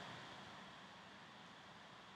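Near silence: faint steady background hiss of the recording.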